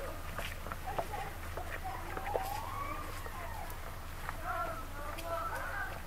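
Small-town street ambience: distant voices talking on and off over a steady low hum, with scattered sharp clicks and knocks.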